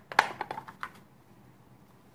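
Paper wrapper of a stick of butter crackling as it is peeled off: a quick run of crisp crinkles and clicks in the first second.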